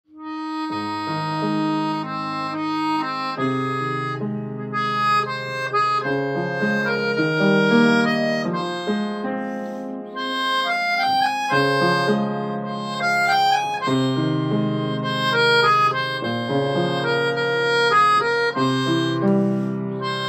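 Melodica (keyboard harmonica) played through its mouthpiece tube, a melody of held notes over sustained piano chords, improvised, starting a moment in.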